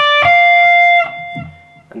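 Electric guitar playing the last two notes of a D minor pentatonic scale on the high E string, the 10th and then the 13th fret: a D and then the F a minor third above it. The F rings for about a second, then drops away and fades out.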